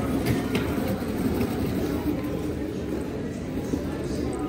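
Casters of a wheeled plastic bin rolling over a smooth hard store floor: a steady rumble, with a few light clicks and rattles in the first second.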